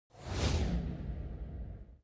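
An editor's whoosh sound effect: a swell of noise with a low rumble underneath that peaks about half a second in, then fades away.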